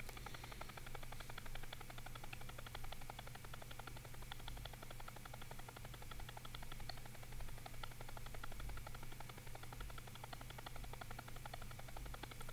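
Faint stuttering 'motorboat effect' of a clip's own field audio played back at super slow motion in a video editor: a rapid, even train of ticks over a steady low hum.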